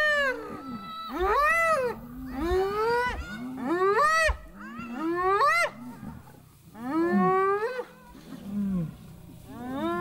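Spotted hyenas calling in a confrontation with a lioness: a rapid series of loud, pitched yelps and whoops, each rising and then falling in pitch, about one a second, with short lulls between them.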